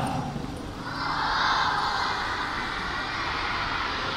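Congregation of many voices reciting a prayer together, blending into an indistinct murmur that swells about a second in.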